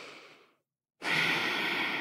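Slow, deliberate breaths close to the microphone, taken while leading a breathing meditation. One long breath fades out about half a second in, and after a moment of silence another long breath begins about a second in and slowly trails off.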